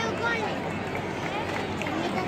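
Crowd of spectators talking: several voices overlapping in a steady murmur of chatter.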